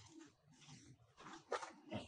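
A short, loud animal call about one and a half seconds in, with fainter low sounds before and after it.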